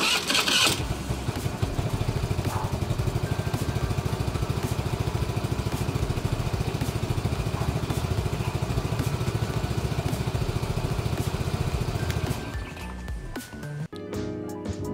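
Rusi Pulse 150 EFI scooter's 150 cc fuel-injected engine starting with a short burst, then idling steadily with an even exhaust pulse, and shutting off about twelve seconds in.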